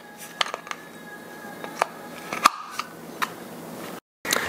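Sharp plastic clicks and knocks, about half a dozen, as a metal-ball roller attachment is handled and pushed onto a handheld spinning body massager, the loudest about two and a half seconds in. A faint steady high tone runs underneath.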